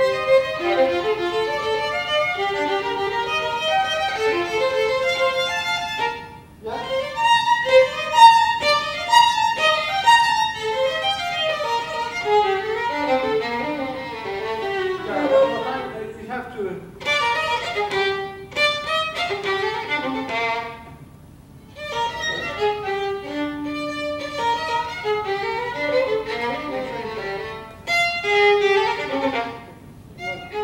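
Violin playing a passage of rapid notes in phrases, breaking off briefly about six, sixteen and twenty-one seconds in and starting again each time.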